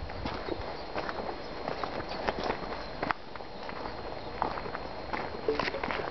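Footsteps on dry, bare dirt strewn with grit: an uneven series of short scuffs and crunches.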